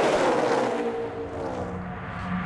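A pack of NASCAR stock cars with V8 engines passing at racing speed, loudest at the start, with the engine pitch falling as they go by. It settles into a steadier, quieter drone as the pack draws away.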